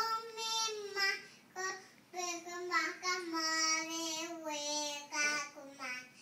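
A toddler singing wordlessly in a high voice: a string of short phrases and held notes with brief breaks, the longest note held for about two seconds in the middle and dipping in pitch as it ends.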